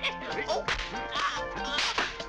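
Film soundtrack of a slapstick fight: a quick run of sharp slaps and whacks, the loudest near the end, over background music.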